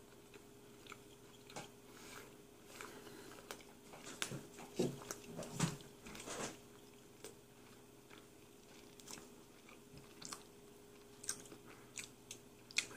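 Faint chewing of a big mouthful of hamburger with fresh jalapeño, with scattered small mouth clicks and smacks that come thickest a few seconds in. A faint steady hum runs underneath.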